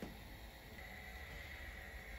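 Quiet room tone: a faint steady low hum and hiss, with no distinct sounds.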